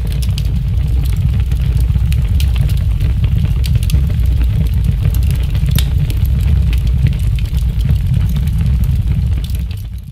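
A loud, steady low rumble with faint scattered clicks over it, fading out at the very end.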